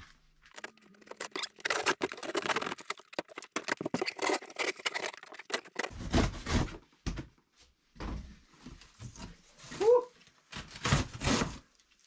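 A large cardboard box being opened by hand: a long run of crackling and ripping as the packing tape and flaps are torn open, then a few dull thumps and the rustle of crinkled kraft-paper packing as the cardboard is moved about.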